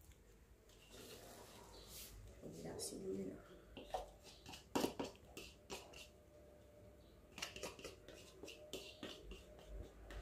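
Faint scraping and tapping of a spoon against a plastic bowl as moist, crumbly cornmeal is tipped into a frying pan, with scattered light clicks and knocks. There is no sizzle, since the burner is off.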